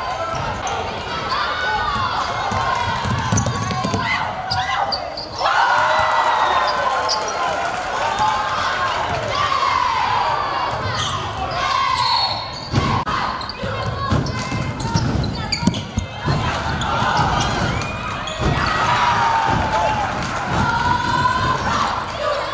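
Basketball game sounds on a hardwood gym court: a ball being dribbled and sneakers squeaking as players move, with voices calling out throughout.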